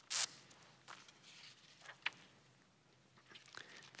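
Thin Bible pages being turned: a quick, hissy swish at the very start, then a few soft paper rustles and small clicks about one and two seconds in.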